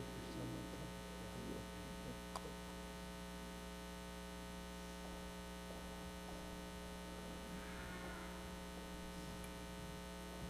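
A steady electrical mains hum on the sound feed, with faint rustling and a single small click about two and a half seconds in.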